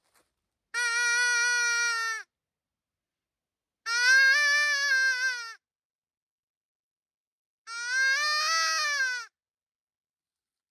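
Hand-held mouth-blown predator call sounding three long, wavering distress cries, each about a second and a half long and about two seconds apart. This is a call used to draw in bears.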